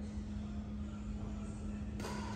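Room tone of a large sports hall: a steady low hum and rumble with no shots or footfalls.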